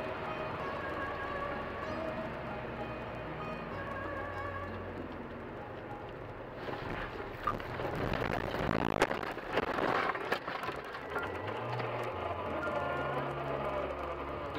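Music playing steadily. Partway through, a rising rush of noise and a couple of sharp knocks as the car runs off the road into snow and bushes.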